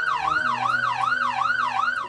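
SONOFF NSPanel Pro smart panel sounding its built-in security alarm: an electronic siren wailing up and down about three times a second, the sign that a door/window sensor has been triggered while the panel is armed in away mode. It cuts off abruptly near the end.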